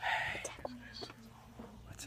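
A person whispering, loudest in the first half second and then trailing off to faint, scattered sounds.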